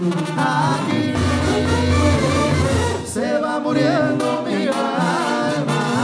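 Live Mexican banda music: a brass band plays, its horns carrying a wavering melody over the sousaphone's low bass notes.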